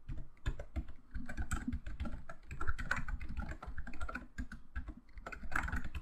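Fast typing on a computer keyboard: a quick, irregular run of key clicks.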